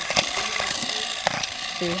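Small motor and gears inside a robotic laser light ball toy running with a steady mechanical whirring rattle while it turns its lights. Two sharp clicks come through, one just after the start and one past halfway.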